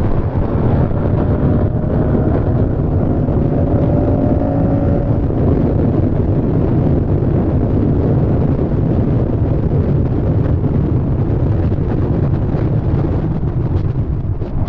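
Moto Guzzi V100 Mandello's transverse V-twin running at highway speed under heavy wind rush on the microphone, its note rising through the first few seconds as the bike accelerates.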